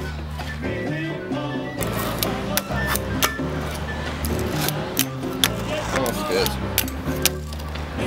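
Music with a steady bass line, over which a fingerboard clacks sharply about eight times at irregular intervals as it pops and lands on the miniature obstacles.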